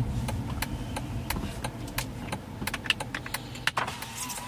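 Low, steady rumble of a car heard from inside the cabin, with scattered irregular sharp clicks and ticks; one louder click comes near the end.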